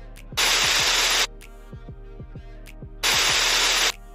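Two loud bursts of harsh static, each lasting just under a second, about two and a half seconds apart, cutting over background music with a thudding beat.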